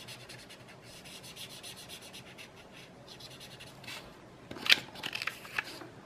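Sakura brush pen tip scratching across sketch paper in quick, short strokes as it fills in a solid black area. About four and a half seconds in comes a cluster of louder, sharper scratches.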